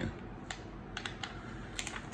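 A few faint, irregular clicks and crackles from a clear plastic heat-transfer-vinyl carrier sheet as fingers press and peel it back from flocked vinyl letters on a cotton T-shirt.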